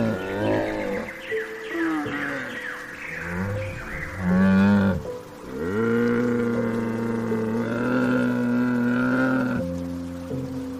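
Bactrian camels calling: a series of short falling moans in the first few seconds, a louder call about four seconds in, then one long, steady call that stops shortly before the end.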